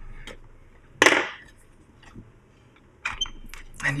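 One sharp knock about a second in, with a short ringing tail, then a few lighter clicks and taps near the end: hard metal and plastic items being set down and shifted on a workbench as a heavy test fixture is moved around.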